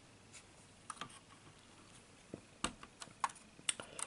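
Faint, irregular clicks and taps of hard plastic LEGO bricks being handled on a tabletop.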